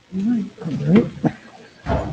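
A person's voice close to the microphone making a few short sounds without clear words, its pitch rising and falling, followed by a thump near the end.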